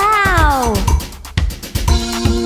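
A cartoon character's whining vocal effect, one voice-like note that rises briefly and then slides down in pitch over most of a second while the music breaks off. A click follows, and drum-backed children's music starts again near the end.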